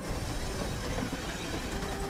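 Train running hard with a heavy low rumble and clatter as it leaves the rails.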